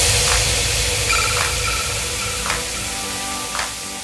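Edited countdown transition sound effect: a hissing, static-like noise that slowly fades away, with a few faint steady tones and a faint tick about once a second.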